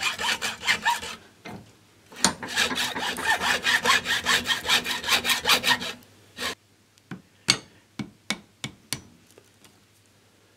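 Hacksaw cutting into a stepper motor's stator in a vice, in rapid back-and-forth strokes that pause briefly about a second in and stop about six seconds in. After that come several separate sharp ticks.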